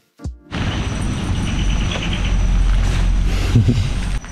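A short low thump, then a steady rumbling noise heavy in the low end, like wind on the microphone, that runs on to the end.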